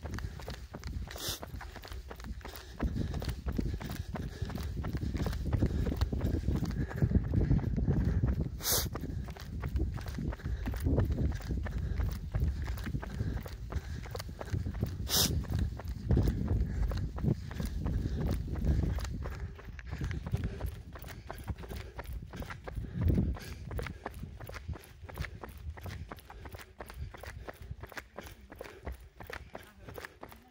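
Running footsteps on an asphalt road, a quick, steady rhythm of footfalls, over a low rumble of wind and handling noise on the camera's microphone. A few sharp clicks stand out near the start and in the middle.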